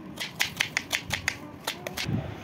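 Kitchen knife slicing red onions on a wooden cutting board: quick, even chops of the blade meeting the board, about five a second.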